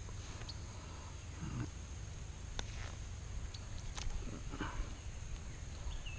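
Faint handling noises of hands unhooking a small largemouth bass: a few scattered small clicks and rustles over a steady low rumble and a thin steady high hum.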